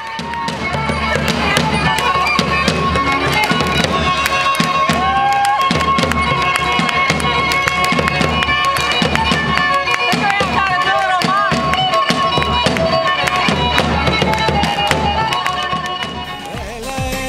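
Pontian folk dance music played live: a shrill reed wind instrument holds long high notes and winds through a melody over a steadily beaten daouli, a large double-headed drum.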